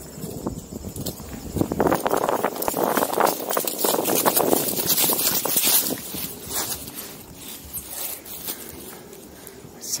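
Footsteps crunching through dry fallen leaves and grass, with rustling from the handheld camera as it is carried, loudest through the first half and dying down about six seconds in.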